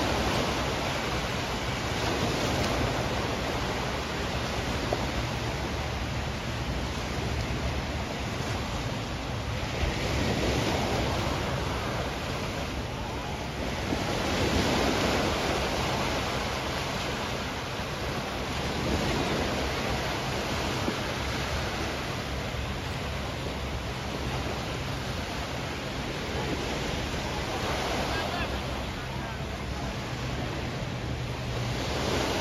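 Small waves breaking and washing up a sandy beach. The surf swells and eases every several seconds, over a steady low wind noise on the microphone.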